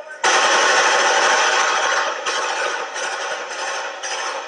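A dense, rapid string of New Year's bangs, starting suddenly about a quarter second in, loudest for the first two seconds and then easing off.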